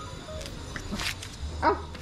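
Saint Bernard puppy giving a short bark near the end, over background music.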